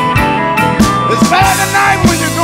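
Electric blues band music: an instrumental passage with a lead guitar line that bends notes in the second half, over a steady drum beat.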